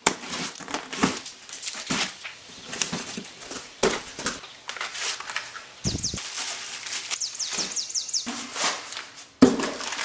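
Cardboard packing being opened and handled: crinkling, rustling and scraping with sharp knocks, the loudest knock near the end. About six seconds in, a bird outside sings a quick series of high, falling notes lasting about two seconds.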